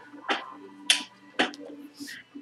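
Three sharp clicks about half a second apart, the middle one the loudest, over a faint steady hum and tone.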